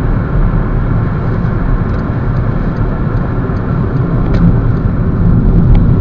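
Road and engine noise inside a moving VW Jetta's cabin: a steady low rumble that grows a little louder near the end.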